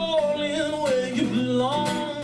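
Male singer holding one long drawn-out sung note over acoustic guitar, the pitch sliding slowly down and then rising again near the end.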